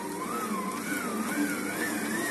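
Electric stand mixer running on first speed, its dough hook turning through dry whole-wheat semolina mix: a steady motor hum with a whine that wavers as the hook catches the mix and climbs in pitch as the motor gets up to speed.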